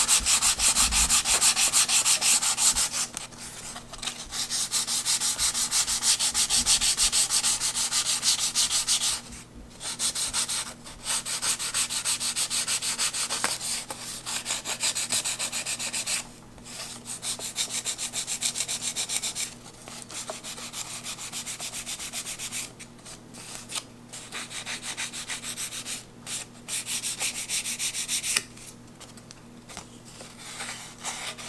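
A small hand sanding block stroked rapidly back and forth along the edge of a balsa glider wing, in runs of a few seconds broken by short pauses.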